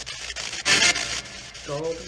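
PSB7 spirit box sweeping through radio stations, played through a small speaker: hissing static chopped into short steps several times a second, with a much louder burst of static a little over half a second in.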